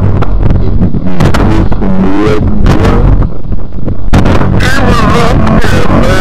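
Dark industrial electronic music: a loud, dense low drone under wavering, warbling pitched tones, broken by noisy percussive hits.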